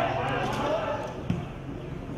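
Voices calling around a football pitch, with one sharp thud of a football being kicked a little over a second in.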